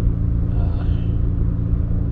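Steady low machine hum with a rumble beneath it, the even drone of a running engine or motor.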